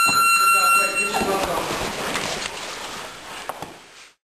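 A steady electronic buzzer tone, held for about a second and a half, over voices; the sound then fades out.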